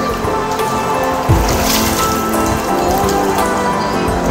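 Music with steady sustained tones over water splashing and pattering as a dense shoal of catfish and carp churn the surface feeding, with a low thump just over a second in.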